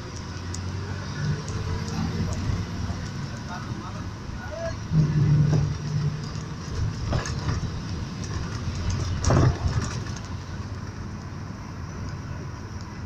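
Car driving along a road, heard from inside the cabin: a steady rumble of engine and tyres, with a short low hum about five seconds in and two brief knocks later on.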